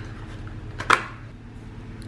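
A small plastic powder bottle being handled, with one sharp click about a second in, over a low room hum.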